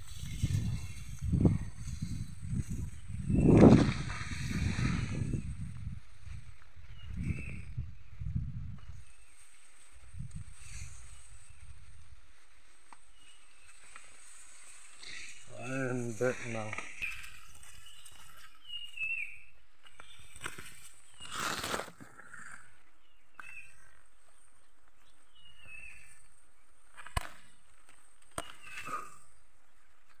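Rustling, knocking and body-mounted phone handling noise as a man climbs and pushes through dense tall grass and shrubs, loudest about four seconds in and settling after about nine seconds. Later a few short high chirps and sharp clicks over a quiet outdoor background.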